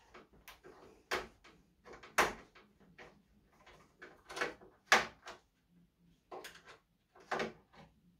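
Screws being undone from a PC case fan with a screwdriver: a string of irregular sharp clicks and short scrapes of the tool and screws against the fan frame and case, about seven in all.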